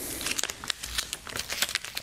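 A peeled-off plastic display sticker crinkling as it is crumpled in the hands: a run of quick, irregular crackles.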